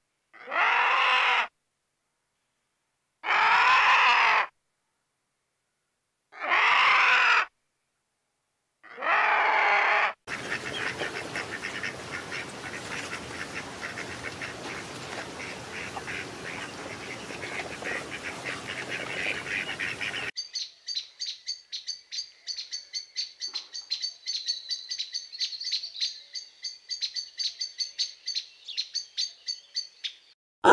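Four separate vulture calls, each about a second long. Then a lesser whistling duck calling in a dense, fast chatter for about ten seconds. Then a crimson sunbird giving rapid, high-pitched chirps in a quick, even rhythm.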